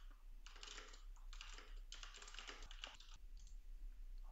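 Faint typing on a computer keyboard, a run of quick keystrokes.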